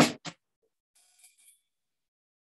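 The end of a spoken word, then near silence, with only a faint, brief hiss about a second in.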